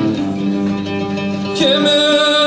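Live traditional folk music from a small band: a plucked lute and other strings play under long held sung notes, and a new high sustained vocal note comes in about one and a half seconds in.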